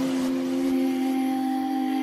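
Electronic dance music from the intro jingle, ending on a held chord of a few steady synth tones.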